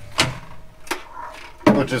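Two short, light knocks about 0.7 s apart from the removed S-duct intake inspection hatch being handled, then a man starts talking near the end.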